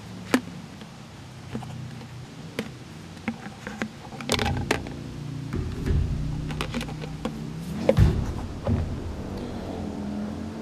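Items knocking and clicking inside a large water bottle as it is tipped and turned to fish out a small microphone: scattered sharp clicks, with handling rumble swelling to the loudest knock about eight seconds in. A low steady hum runs underneath.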